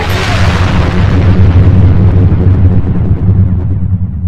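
Logo-sting sound effect: a loud, sudden boom at the start, then a deep low rumble that holds while a hiss on top fades away over a few seconds.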